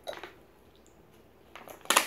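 Small objects being handled: a few soft clinks and rustles, then one sharp click near the end.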